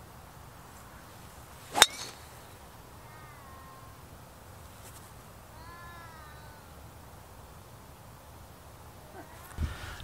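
A golf driver strikes a teed ball: one sharp crack about two seconds in. Two faint high calls with wavering pitch follow a few seconds later.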